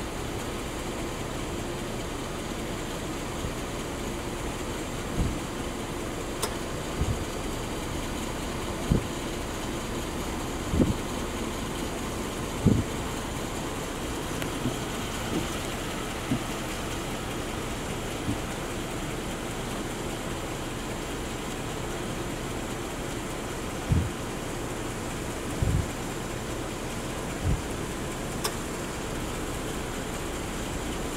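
Steady hum of a car engine idling, with a dozen or so irregular, short low thumps through it.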